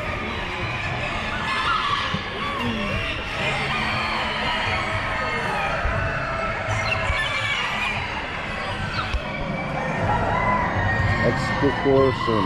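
Many chickens crowing and clucking at once, overlapping calls over a steady murmur of people talking.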